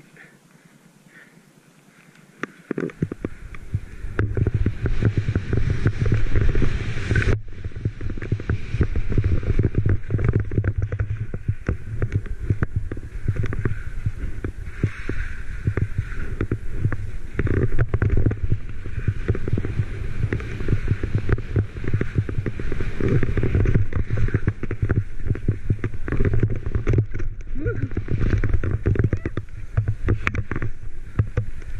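Skis sliding fast through powder snow, with wind rushing over the camera's microphone. The rushing starts about three seconds in, after a quieter start, and stays loud and steady.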